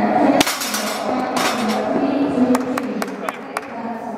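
A taekwon-do power-breaking strike on a board held in a breaking stand: one sharp crack about half a second in, then a short burst of noise and several lighter clicks over the next few seconds.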